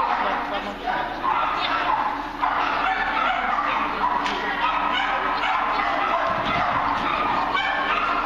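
A dog barking again and again, with people's voices underneath.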